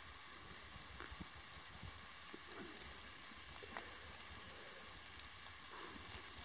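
Quiet outdoor ambience: a faint steady hiss with a few soft, isolated ticks and clicks.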